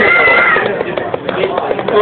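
A high-pitched drawn-out vocal call, about half a second long, at the very start, then people talking over each other.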